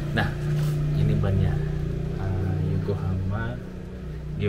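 A man speaking quietly in short bits over a steady low hum.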